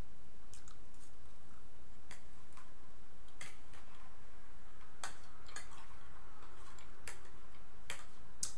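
Eating sounds: a fork clicking and scraping on a plate, with chewing, giving scattered sharp clicks about once a second over a steady low hum.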